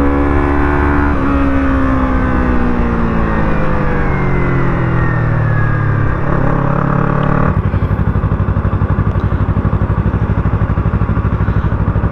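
Motorcycle engine winding down, its pitch falling steadily as the rider rolls off the throttle and slows. About seven and a half seconds in, the bike comes to a stop and the engine settles into an evenly pulsing idle.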